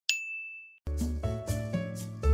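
A single bright, high ding sound effect that rings and fades out within about a second. Then music with a deep bass line starts.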